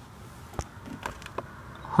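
Quiet, steady low rumble inside a parked car's cabin, with three faint clicks about a second apart.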